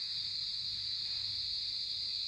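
Crickets trilling, a continuous high-pitched chirring that holds steady without a break.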